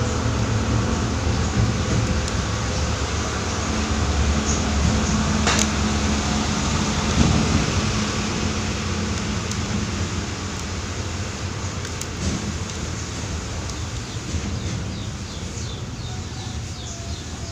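A steady low mechanical hum from a machine running nearby, with a single sharp click about five and a half seconds in. Faint high chirps from small birds come in near the end.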